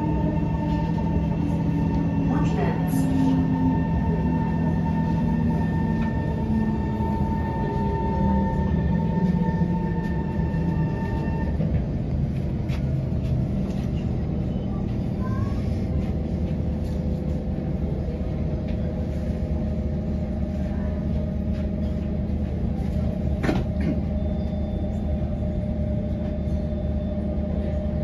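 SMRT C151 train's traction motors whining as it brakes into a station, the low whine falling in pitch and dying away about ten seconds in. The stopped train then hums steadily, with a sharp click a few seconds before the end.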